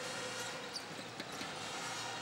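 Steady arena crowd noise with a basketball being dribbled on the hardwood court, heard as a few faint short knocks.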